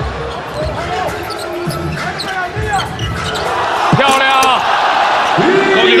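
Basketball game sound in an arena: the ball bouncing on the hardwood court and short high squeaks, over crowd noise that swells about four seconds in.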